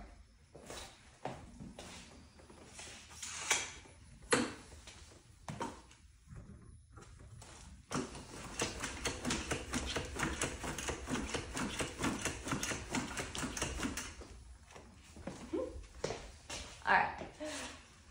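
Begode T4 electric unicycle's suspension being bounced under a rider: a few separate knocks, then a fast run of clicks and knocks for about six seconds in the middle. The shock does not bottom out.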